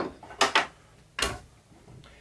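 Four short knocks and clacks of kitchenware being handled: a glass coffee carafe set down on a wooden tray beside an espresso machine. One comes at the start, two close together about half a second in, and one a little past a second.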